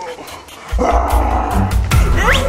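A deep growl starts about two-thirds of a second in and lasts just over a second, over background music.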